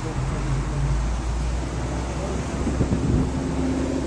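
Steady low rumble of road traffic and idling vehicles, with wind buffeting the microphone and faint voices.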